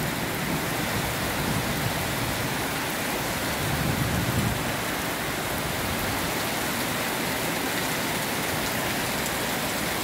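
Heavy rain pouring steadily onto a flooded concrete yard and road, an even hiss of rain hitting standing water.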